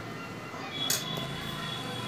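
A quiet room with one light click about a second in, a spoon knocking the glass mixing bowl as chilli powder is sprinkled over raw fish, followed by a faint steady high tone.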